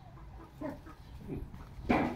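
Short animal calls, about three, with the loudest and sharpest one near the end.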